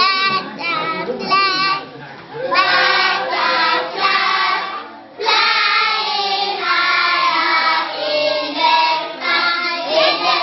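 A group of children singing a song together. The singing breaks off briefly about two seconds in and again about five seconds in.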